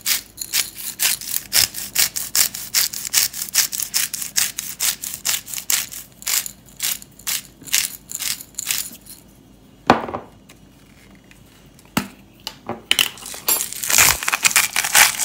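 Plastic cap of a disposable pepper-grinder bottle twisted by hand, clicking rapidly, several clicks a second, as it grinds peppercorns. The clicking stops for about three seconds past the middle, with a single click or two, then starts again near the end.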